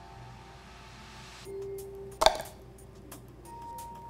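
A quarter blown off an acrylic block jumps into a clear plastic cup, landing with one sharp clink a little past the middle, just after a short hiss of breath blown across it. Soft background music runs underneath.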